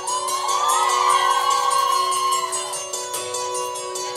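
A live band's keyboard intro with steady held notes and a repeated high figure, while the audience cheers and screams over it for about the first three seconds.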